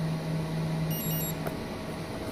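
Steady low hum, with a short high electronic beep from a hobby LiPo battery charger about a second in, as its Start button is pressed to begin a capacity check.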